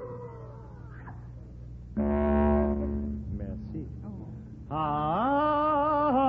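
Opera-style music with brass. About two seconds in there is a short, loud held chord. Near the end a low note slides up into a long, wavering held note.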